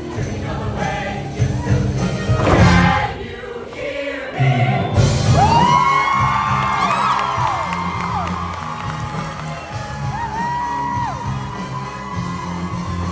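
A large mixed show choir singing over upbeat accompaniment with a steady bass line, with some audience cheering in the first few seconds. From about five seconds in the voices hold long notes that slide in and out.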